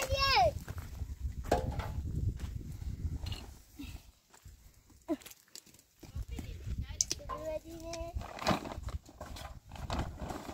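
Short calls from children over the scattered knocks and shuffles of a donkey's hooves on stony ground, with a plastic feed sack rustling as feed is tipped into a metal bowl.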